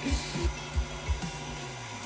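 KitchenAid Artisan stand mixer motor running steadily, turning the fettuccine cutter attachment as pasta dough feeds through. Background music with a steady beat plays underneath.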